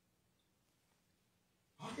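Near silence: room tone, with a man's voice starting just before the end.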